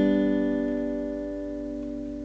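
Acoustic guitar ringing out on a single strummed G major chord, the notes slowly fading.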